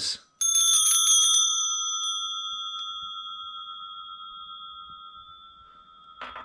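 Blacksmith-made metal bells on an iron strap, rung several times in quick succession for about a second, then left ringing with one clear, steady tone that slowly fades away.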